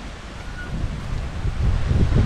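Wind buffeting the microphone: an uneven low rumble that grows louder through the second half.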